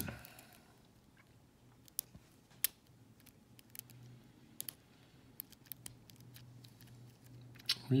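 Faint, irregular metallic clicks and ticks of a lock pick working the pin stacks inside a brass Gerda euro cylinder held under light tension, as the pins are lifted and set one by one.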